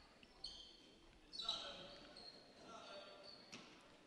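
Faint gymnasium ambience during a stoppage in play: distant voices from players and spectators echoing in the hall, with a faint knock near the end.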